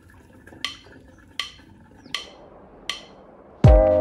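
Background music track opening with four sharp percussive clicks, evenly spaced about three-quarters of a second apart like a count-in. The full music, with a bass thump and sustained melody, comes in on the next beat near the end.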